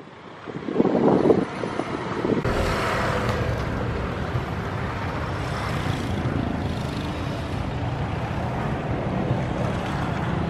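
Steady road-vehicle noise, an even rumbling hiss, with a louder swell about a second in.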